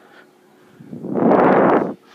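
A loud rush of air noise on the microphone, about a second long, swelling and then cutting off abruptly.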